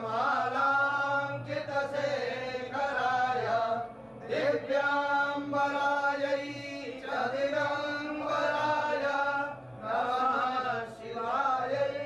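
Male priests chanting Sanskrit puja mantras in long phrases on steady, held pitches, pausing briefly for breath about every two to three seconds.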